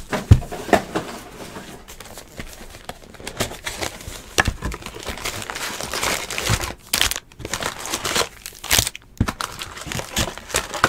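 Foil trading-card packs crinkling as a cardboard box of them is torn open and handled, an irregular run of crackles and scrapes.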